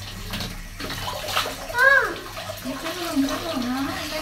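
Water splashing and sloshing in a plastic baby bathtub as a toddler scoops and pours with a cup. About two seconds in, a short high-pitched 'à' from a voice is the loudest sound.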